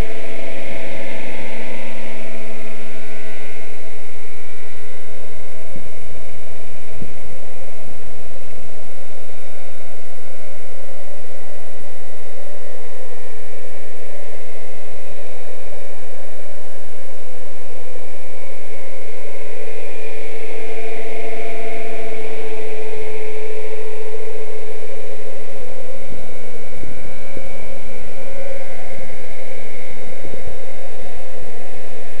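Radio-controlled Winco MD 369 scale helicopter in flight: the steady whine of its motor and rotors, its pitch swaying slowly up and down as the helicopter moves around, louder near the start and again about two-thirds of the way through.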